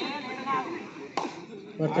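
Shouting voices of kabaddi players and onlookers, with one sharp slap or clap about a second in; near the end a low, steady-pitched raider's chant of "kabaddi" begins.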